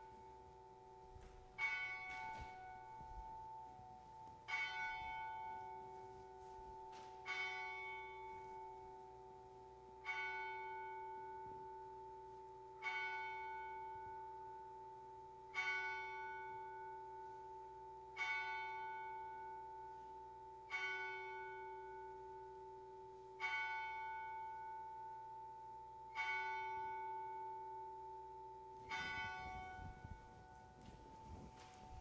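A bell tolling slowly, with eleven single strokes about three seconds apart. Each stroke rings on and fades into the next.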